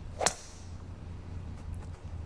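A single quick swish of a golf club swinging through the air, about a quarter second in, from the AI-generated clip's own soundtrack, over a faint low hum.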